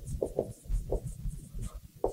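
Dry-erase marker squeaking and scratching on a whiteboard as a word is written, a quick run of short strokes.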